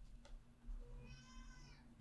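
A domestic cat meows once, faintly, about a second in: a single drawn-out call that sags slightly in pitch at the end.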